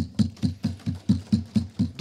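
A rapid, even series of low thumps, about four to five a second.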